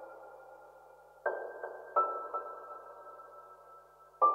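Ambient electronic music: sustained chords triggered from a grid pad controller, each starting suddenly and ringing out slowly with a clear high tone on top. A fading chord gives way to a new one about a second in, and another follows about two seconds in.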